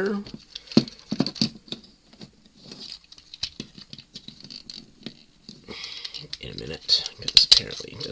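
Plastic clicks, taps and scratching of a Transformers Generations Goldfire action figure's hinged parts and pegs being folded and snapped into place by hand, with a few sharp clicks about a second in and a louder cluster of snaps near the end.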